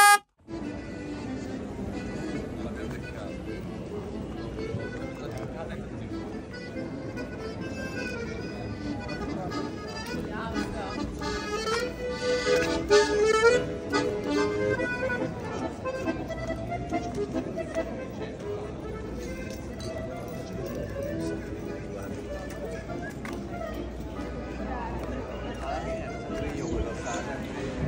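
A short, loud electric boat horn blast at the very start, then accordion music that carries on steadily, its melody strongest a little under halfway through.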